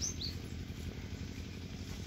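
Steady low outdoor background rumble, with two short, high, falling bird chirps right at the start.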